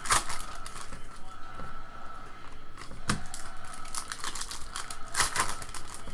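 Foil trading-card pack being torn open and its wrapper crinkling, as short sharp crackles and rustles. The loudest crackles come right at the start, about three seconds in, and around five seconds in.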